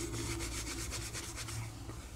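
Rubbing against or near the microphone: a quick run of scratchy strokes, about eight a second, lasting about a second, over a steady low hum.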